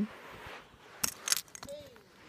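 Plastic Lego bricks clicking and clattering as a hand picks through them, a few sharp clicks starting about a second in.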